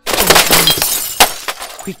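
Glass-shattering sound effect: a sudden loud crash at the start that trails off, with a second sharp hit about a second later.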